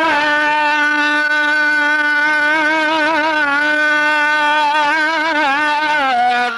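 A man's voice holding one long sung note on the drawn-out vowel of "nada" in an Islamic ibtihal, unaccompanied, with small wavering ornaments in pitch.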